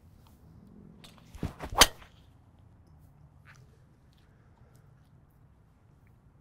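A full driver swing with a PING G430 Max 10K driver: a short swish of the club coming down, then one sharp, loud crack as the titanium driver head strikes the ball, about two seconds in.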